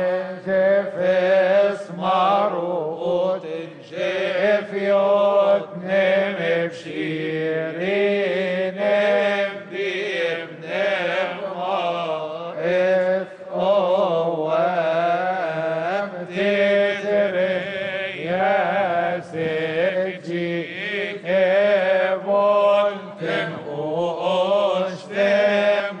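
A choir of male Coptic deacons chanting a liturgical hymn in unison: a slow, melismatic melody over a steady low held note.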